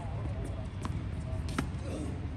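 Tennis ball being hit and bouncing on a hard court in a rally: two sharp knocks, the second, a little past halfway, the louder, over a steady low rumble.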